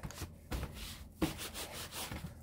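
Irregular rubbing and scuffing noise with a few soft knocks, from something being handled or wiped close to the microphone.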